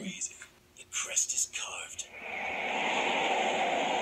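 Audio of the anime episode playing: faint fragments of dialogue, then from about halfway a steady rushing noise that swells up and holds.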